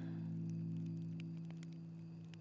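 Soft background score: a low held chord that slowly fades.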